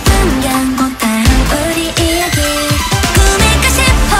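Pop house music: synth lines over a repeating kick drum, with female vocals held and sliding in pitch.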